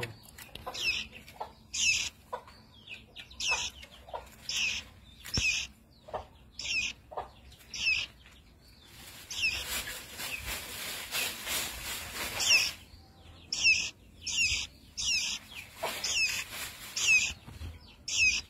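Fledgling songbird calling over and over: short, high chirps, about one or two a second. In the middle there is a few seconds of hiss with no calls.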